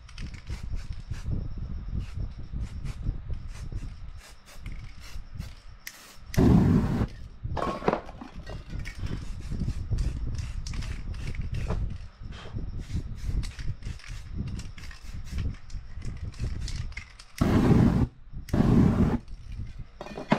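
Spray paint can released in short loud rushing bursts, one about six seconds in and two near the end, over the light crackling of burning paint and masking tape.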